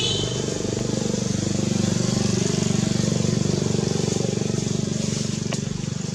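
A small engine running steadily with a fast pulsing beat, swelling about two seconds in and easing off toward the end. A brief high chirp comes at the very start and a sharp tick near the end.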